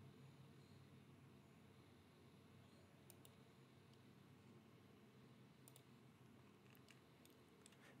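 Near silence with a few faint computer mouse clicks, one or two about three seconds in and a short cluster near the end.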